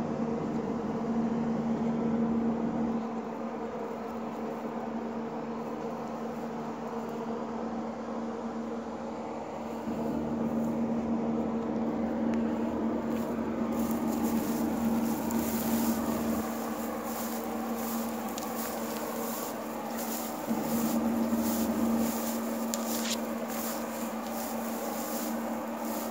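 Steady electrical hum of a few steady tones, typical of a nearby power substation and high-voltage lines. From about halfway on, irregular rustles and crackles of walking through dry grass join it.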